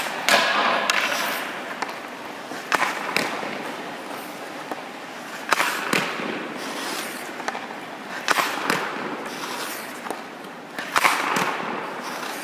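Hockey stick blades striking pucks in a series of five shots, one about every three seconds. Each shot is a sharp crack, followed a fraction of a second later by a second knock where the puck lands, with the sharp echo of an ice arena.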